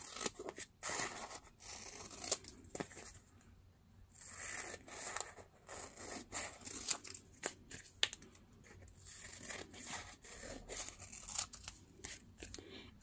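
Scissors cutting through a sheet of decorative paper: a run of quiet snips and paper rustling, broken by a couple of short pauses.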